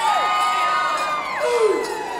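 Women singers ending a pow wow song with long held notes that slide down and break off about halfway through, while the crowd whoops and cheers.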